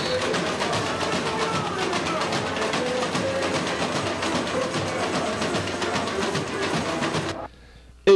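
Samba carnival music: a fast, even percussion beat with voices singing and a guitar, cutting off abruptly near the end.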